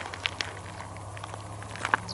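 Quiet outdoor background with a steady low hum and a few faint, short clicks.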